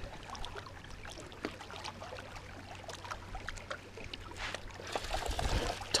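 Faint water lapping at a rocky lakeshore, with scattered light clicks and taps. The noise grows louder, with a few low thumps, in the last second or so.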